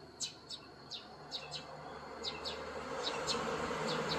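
Small birds giving short, high chirps that fall in pitch, repeating several times, over a buzzing insect whose hum grows steadily louder toward the end.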